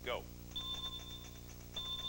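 An electronic ringing signal from a game-show board, a steady high and low tone with a fast flutter, sounding for about a second and again near the end as letter tiles are revealed on the board.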